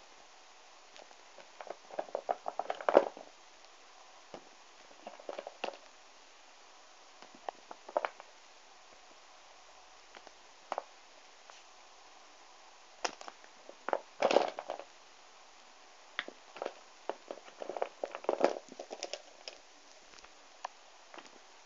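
Handling noise: small rubber erasers being picked up, shuffled and set down among others on a fabric blanket, heard as scattered clicks and rustles. There are louder flurries about three seconds in, in the middle, and near the end.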